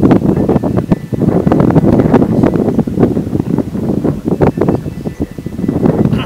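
Loud wind buffeting the microphone: a gusty, uneven rumble that surges and drops in quick, irregular pulses.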